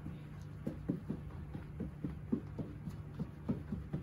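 Footsteps of a person running in place: quick, soft thumps, about four a second, starting a little under a second in, over a steady low hum.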